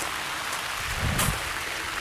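Light rain falling, a steady even hiss of drops on leaves and the camera, with one brief knock a little over a second in.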